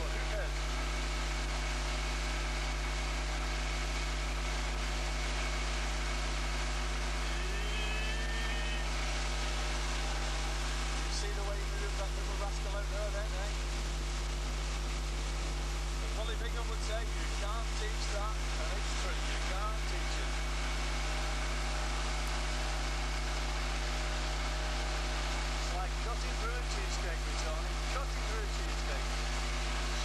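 Outboard motor of a ski boat running steadily at towing speed, with rushing wind and wake noise.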